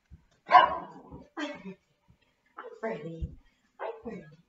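Small dog barking in short, sharp calls, about four times, the loudest about half a second in, with dull thuds in between.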